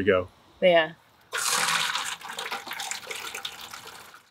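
Water pouring from a hose fitting into a plastic bucket, starting suddenly about a second in and slowly getting quieter.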